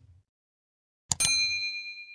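Sound effects for an on-screen subscribe button: a mouse click about a second in, followed at once by a bright notification-bell ding that rings and fades away.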